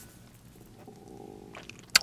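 Close-miked mouth sounds of eating stretchy cheesy whipped potatoes (aligot) off a fork: quiet wet mouth noises, a low throaty rumble lasting about a second in the middle, and one sharp click near the end.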